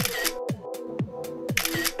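Two camera-shutter sound effects, one at the start and one about a second and a half in, over background music with a steady kick-drum beat about twice a second.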